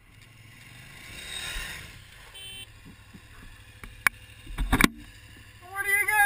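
Adventure motorcycles running in sand, then a motorcycle going down beside the stopped bike: a sharp clack and heavy thumps about four and a half seconds in as it hits the sand and the other bike.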